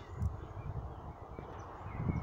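Quiet outdoor ambience: a low steady hum with faint, sparse bird chirps, and a few soft low thuds near the start.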